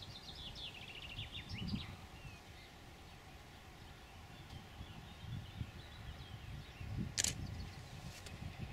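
Quiet rural outdoor ambience: a small bird sings a quick run of falling chirps near the start, over a low, irregular rumble. A single sharp click comes about seven seconds in.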